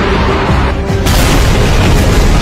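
Anime sound effects of an energy-beam attack: a deep rumble, then a sudden loud explosion about a second in that keeps rumbling on.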